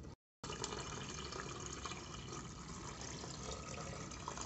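A stream of water pouring steadily into a pressure-cooker pot of tomato sauce, starting after a brief dropout at the very beginning.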